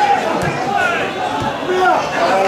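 Several voices of players and spectators calling and shouting over one another around a football pitch during play, with a single sharp knock about half a second in.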